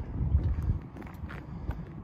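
Low wind rumble on the microphone, with a few soft footsteps on tarmac.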